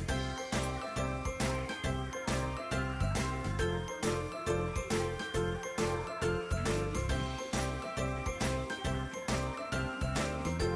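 Pop music from a music video playing through a Motorola 55-inch Android TV's built-in speakers, with a steady beat under a bright melody, heard in the room.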